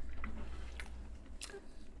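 Faint chewing and mouth sounds with a few soft clicks, as a piece of microwaved leftover sushi is picked up from a plate and bitten into.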